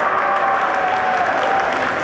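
Audience applauding, with a steady, dense clatter of clapping.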